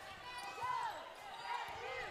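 Faint on-court sound of a basketball game: a ball being dribbled on the hardwood, with a few short rising-and-falling squeaks.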